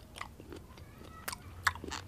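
Quiet close-miked chewing of a slice of black tomato, with a few soft, wet mouth clicks.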